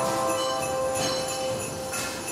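Christmas outro music with jingle bells over held notes.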